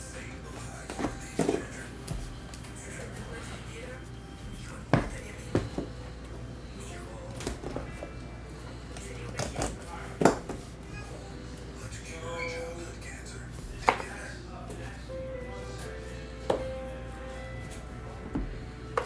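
Scattered taps and clicks of a cardboard trading-card box being unsealed and its packs lifted out and handled, over quiet background music.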